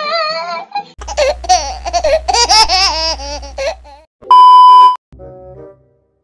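Edited-in comedy sound effects: a high-pitched laughing voice for most of the first four seconds, then a loud steady beep, the loudest sound, lasting about half a second, followed near the end by a few short keyboard-like notes.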